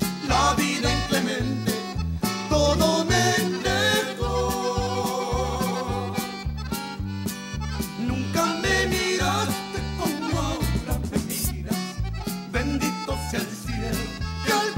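Texas conjunto band playing, with a piano accordion carrying the melody over bass, guitars and a steady drum beat.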